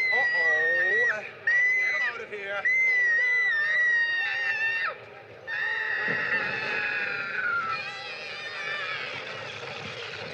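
A young child screaming: three long, high, held wails in the first five seconds, then after a short break a longer wail that falls in pitch and fades.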